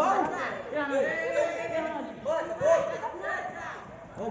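Voices talking and calling out, several people at once with no clear words.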